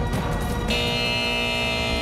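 TV show's theme jingle over the logo sting: rhythmic music that gives way, under a second in, to one long held chord.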